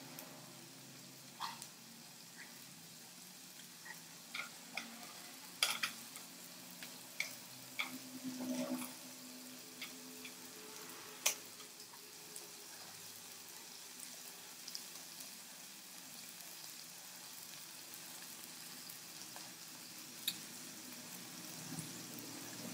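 Faint steady sizzle of squid, baby corn and noodles cooking on a hot griddle, with a scattering of short sharp clicks from chopsticks against the pan and food, mostly in the first half.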